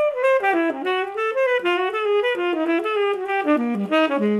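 Unaccompanied saxophone playing a fast four-bar jazz lick over the opening bars of a blues. It is a single line of quick notes that works down to its lowest notes near the end.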